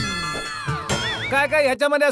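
Comic background music: a held note that slides down in pitch, then a short wavering whistle-like tone.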